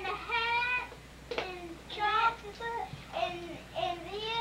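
A young child's high voice singing a few short phrases, with held notes between brief pauses.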